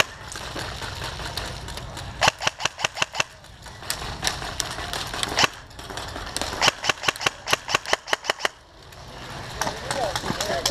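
Airsoft guns firing in several bursts of rapid sharp shots, about six a second, with short pauses between bursts, over a low steady rumble.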